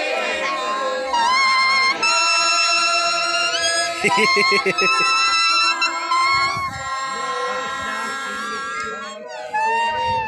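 Leaves blown as reed instruments, playing a folk tune in long held notes that step up and down in pitch, with a fast warbling run about four seconds in.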